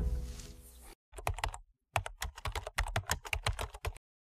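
Background music fades out over the first second, then a keyboard-typing sound effect: a quick run of key clicks with a brief pause about a second and a half in.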